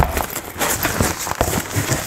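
Handling noise from a soft fabric tool bag being pulled out of a cardboard box: irregular rustling and scraping with a string of small knocks and crackles.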